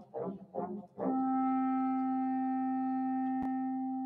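Concert wind ensemble playing: a run of short, separated notes, then about a second in a long held note that carries on steadily to the end.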